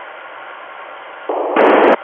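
FM receiver on a satellite downlink: a quieted carrier with only a low hiss, then loud static breaks back in about a second and a half in and cuts off again just before the end. The static is the open-squelch noise of the receiver whenever the relayed signal fades out.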